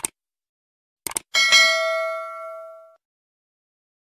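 A single bell-like ding, struck once about a second and a half in and ringing down over about a second and a half, preceded by a few short clicks.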